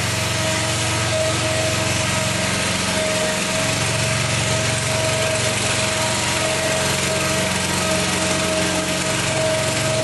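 Home-built scale tank's 24 horsepower Honda GX670 V-twin engine running steadily while the tank drives on its hydraulic drive, with a steady whine held above the engine note.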